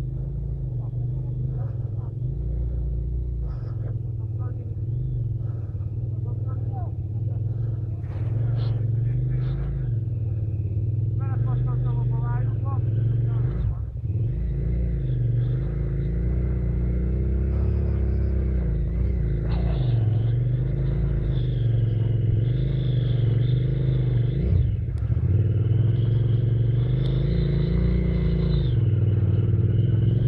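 Enduro dirt bike engines running at low revs, their note rising and falling with the throttle and growing gradually louder as the bikes approach.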